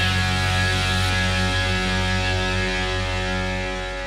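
A rock band's final chord held and ringing out, electric guitar and bass sustaining one steady chord that slowly fades as the song ends.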